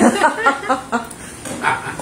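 Several people laughing at a joke's punchline: a burst of quick, rhythmic 'ha-ha' pulses in the first second, trailing off into weaker chuckles.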